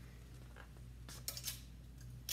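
Clothes hangers clicking and scraping against a clothing rack as garments are handled: a few short, sharp clicks about a second in, over a low steady hum.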